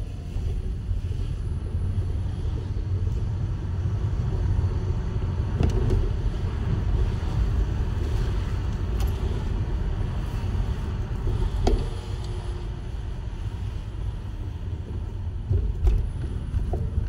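Steady low rumble of a vehicle driving along a road, with a faint wavering engine note and a few brief knocks about six, twelve and sixteen seconds in.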